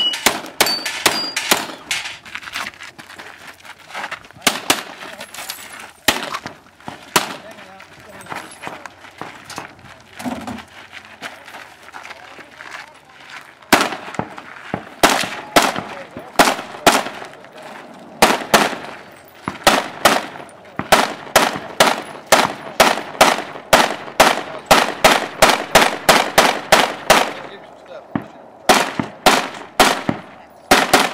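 Gunshots from a multi-gun competitor shooting through a stage, fired in quick strings of up to about three shots a second. There are short pauses between the strings, and a sparser stretch in the middle before the fast shooting resumes.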